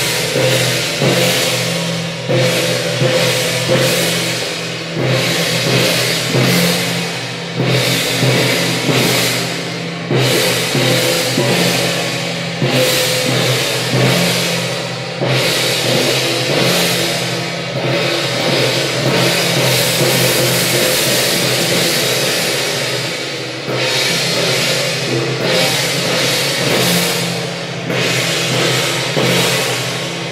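Taiwanese temple-procession percussion: large brass hand cymbals clashing with drums in a loud, steady beat, strong strokes coming every second or two.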